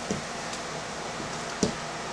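Steady low background hiss, broken by one short sharp click about one and a half seconds in, as a metal alligator test clip and small adjustable wrench are handled on the counter.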